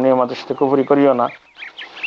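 A man lecturing in Bengali in a low, steady voice. When he pauses about a second and a half in, a few faint, short, high chirps can be heard.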